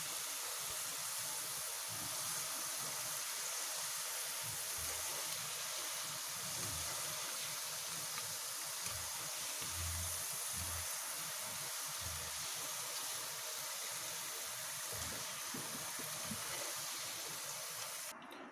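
Potato slices deep-frying in hot oil, a steady sizzle of moisture still bubbling out of them: while the bubbling goes on, the chips are not yet crisp.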